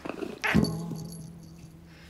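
A cartoon baby dinosaur's short creature-call sound effect about half a second in, followed by a single low note that lingers and fades under light background music.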